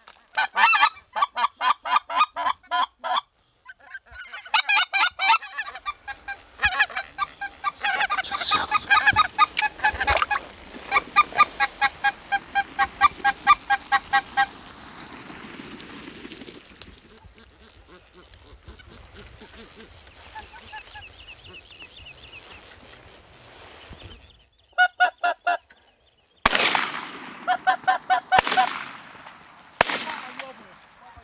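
A flock of geese honking, with rapid, repeated calls in long runs that then thin out. Near the end come two shotgun shots about two seconds apart, with honking between them.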